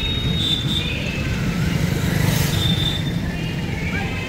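Street traffic: a steady rumble of passing motorbikes and auto-rickshaws, swelling briefly a little past the middle as a vehicle goes by.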